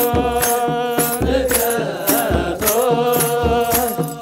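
Ethiopian Orthodox liturgical chant: a group of male voices holding long, slowly gliding notes, accompanied by kebero drum beats and jingling rattles keeping a steady beat.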